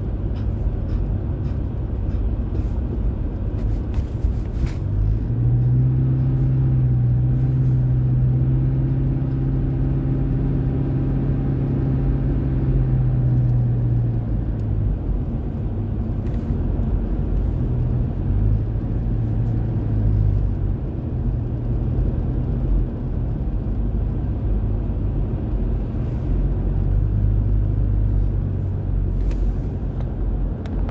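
Road noise inside a moving car on a highway: a steady low rumble. A low droning hum comes in about five seconds in and holds for about nine seconds, then returns twice more, briefly.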